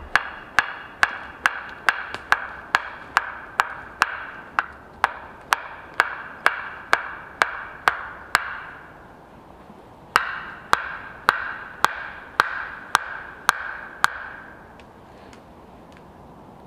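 A wooden stake for a bushcraft bench being driven into the ground: a steady run of hard wooden knocks, about two a second, each with a short ringing note. The knocking pauses for under two seconds about eight seconds in, then starts again and stops near fourteen seconds.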